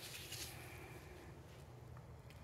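Faint soft rustling of the oily pleated paper element from a cut-open oil filter being handled and unfolded in gloved hands, mostly in the first half second, over a low steady room hum.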